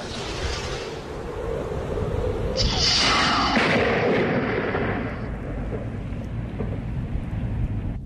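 A small wire-trailing rocket launching toward a thundercloud with a rushing hiss, then, about two and a half seconds in, a rocket-triggered lightning strike down its wire: a sudden loud crack of thunder that rumbles away over the next few seconds.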